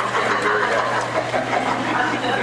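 A man's voice picked up poorly, muffled and garbled, over a steady low electrical hum.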